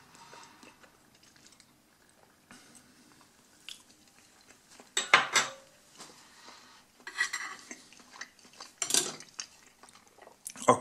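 A plate and metal cutlery knocking against a wooden table: a loud pair of knocks about five seconds in, then lighter clinks near seven and nine seconds.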